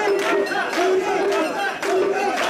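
A crowd of mikoshi bearers chanting and shouting together as they carry a portable shrine, many voices overlapping, with a call repeating about twice a second.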